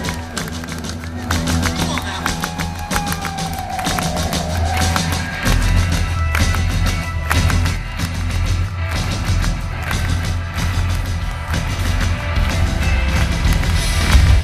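Live rock band with electric guitars, bass and drums playing through a stage PA, heard from the audience, with heavy bass and hand claps in time. A gliding note rises and falls near the start and again about four seconds in.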